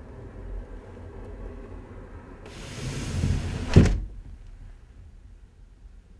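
A wooden sash window, fitted with brush-pile draught strips, being slid down in its frame. The sliding builds to a rising scrape and ends in a sharp knock a little before four seconds in as the sash shuts.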